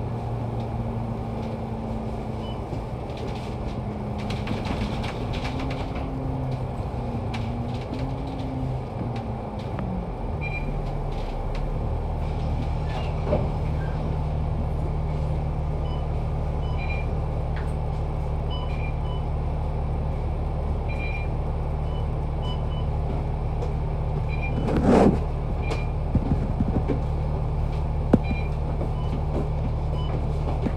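Cabin sound of a MAN A95 Euro 5 double-decker bus under way: the diesel engine's note wavers and steps down over the first ten seconds, then runs steady. A short, loud burst of noise comes about 25 seconds in, with light ticks and rattles throughout.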